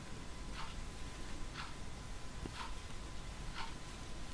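A clock ticking faintly, one tick a second, four ticks in all.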